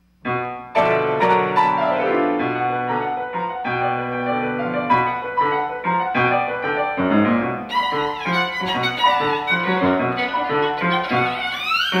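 Solo violin with piano accompaniment playing a contemporary concerto movement, starting right after a brief silence. Near the end the violin slides steeply upward in pitch.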